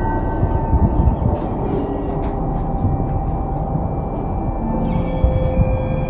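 A deep, steady rumble with several thin held tones coming and going over it at different pitches, like an eerie ambient drone, and a short gliding tone about five seconds in.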